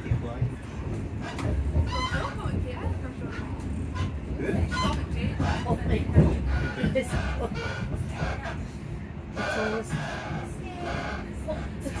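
Passenger train running, a steady low rumble heard from inside the carriage, under indistinct voices of passengers talking.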